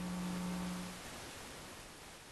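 Faint steady low electrical hum that fades out about a second in, leaving faint hiss.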